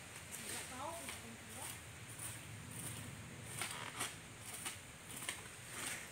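Quiet outdoor ambience with scattered soft clicks and rustles from a harnessed water buffalo shifting and lowering its head to graze, and a faint voice about a second in.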